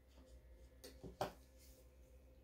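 Two light knocks about a third of a second apart, about a second in, the second louder: a paint cup and tools being set down on the work table, over a faint room hum.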